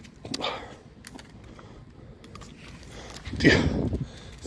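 An Alaskan malamute sniffing along the ground, with small scattered clicks. Near the end comes a short, loud rush of breath.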